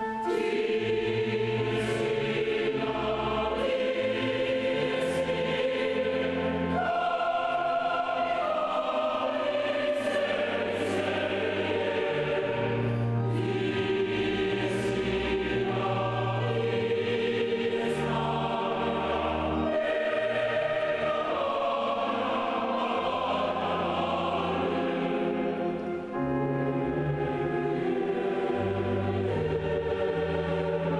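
A large mixed choir of men's and women's voices singing together, holding chords that change every second or two, with a brief dip near the end.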